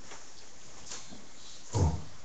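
A pause of steady room hiss, then a man's short, low "Oh" exclamation near the end.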